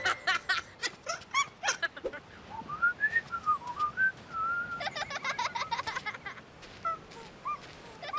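Cartoon character vocal effects: a run of high, squeaky chirps, then a single wavering whistle that glides up and down for about two seconds, then a quick burst of squeaky giggling-like chirps about five seconds in.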